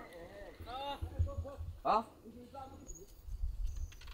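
Faint men's voices calling out in a few short bursts, over a low rumble.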